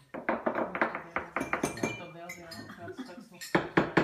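Metal cupping spoons clinking against ceramic coffee-cupping bowls, many short strikes in quick succession, with two louder ones near the end.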